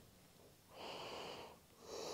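A person breathing slowly and deeply: one breath of just under a second starting about a second in, and the next beginning near the end.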